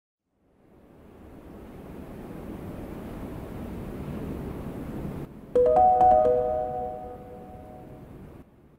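Logo intro sound effect: an airy whoosh swells for about five seconds and cuts off suddenly, then a quick run of several bright chime notes rings out and slowly fades.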